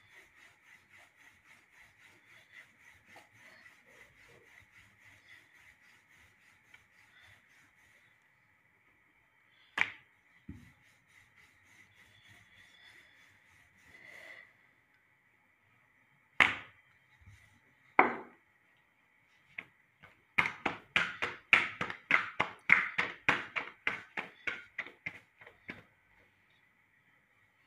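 Roti dough being patted and slapped by hand: soft rhythmic pats at first, a few single sharp slaps, then near the end a fast run of loud slaps, about five a second, as the dough is slapped back and forth between the palms. A faint steady high whine runs underneath.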